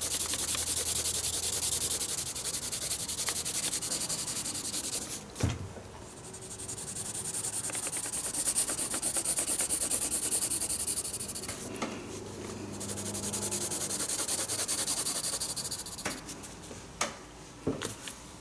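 Graphite pencil shading on sketchbook paper: a steady, scratchy back-and-forth hatching. It comes in three stretches, with short breaks about five and twelve seconds in, and a few light clicks follow near the end.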